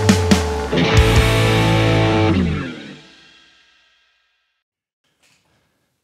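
Squier Affinity Telecaster electric guitar played with overdrive: a quick rhythmic distorted riff, then a final chord struck about a second in that rings on and fades out over the next few seconds.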